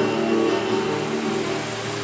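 Acoustic guitar chords ringing and slowly fading, with a car driving past close by toward the end.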